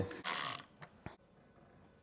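Faint handling noise as a spirit level and a metal wall-mount bracket are moved against a wooden board: a brief rustle, then two light clicks about a second in.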